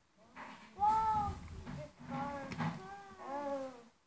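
Three drawn-out, high, meow-like calls, each rising then falling in pitch, about a second apart.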